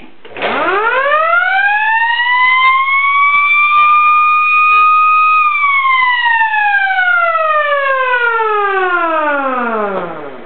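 Old 6-volt electric boat siren run on 12 volts DC, its wail rising in pitch as the rotor spins up for about four seconds and holding briefly at the top. About halfway through the pitch turns and falls steadily in a long descending wail as the siren winds down.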